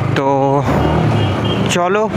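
Yamaha R15 V4's single-cylinder engine running steadily as the motorcycle rides along at low speed.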